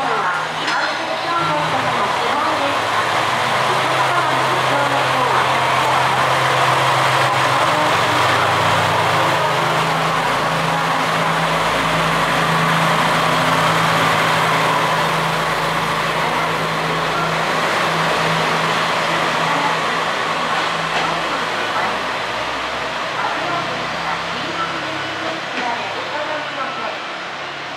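Two-car JR West KiHa 120 diesel railcar pulling away from a platform: steady engine drone with low tones, growing louder with wheel and rail noise as the cars pass close by. It fades as the train draws away.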